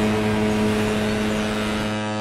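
Ship's horn sounding one long, steady low blast over a hiss of sea and wind ambience.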